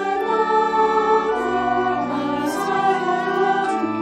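Choir singing slow, sustained chords that change about once a second, over an organ holding a steady bass line.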